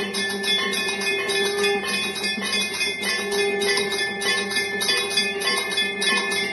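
Hanging brass temple bells rung continuously during aarti: a dense clangour of several strikes a second over a steady, sustained ringing.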